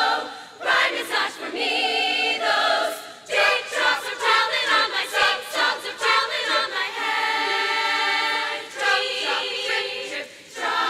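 Large women's choir singing a cappella in harmony, in short phrases with one long held chord near the end.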